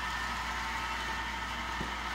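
Steady low mechanical hum with a faint hiss over it, unchanging throughout.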